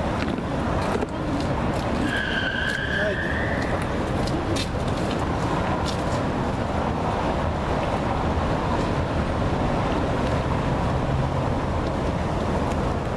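Steady street traffic noise, a continuous low rumble of road vehicles, with a brief high-pitched tone about two seconds in.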